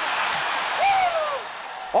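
Ice hockey arena crowd noise just after a goal, a steady hubbub that dies down in the second half, with one brief falling vocal exclamation about a second in.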